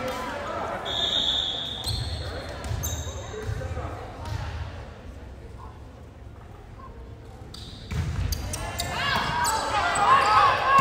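A volleyball bounced about four times on a hardwood gym floor before a serve, after a short high whistle about a second in. Another thud comes near the end as voices of players and spectators rise, echoing in the large hall.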